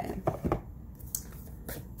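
A deck of oracle cards being shuffled and handled in the hands, giving a few short papery snaps over a low steady hum.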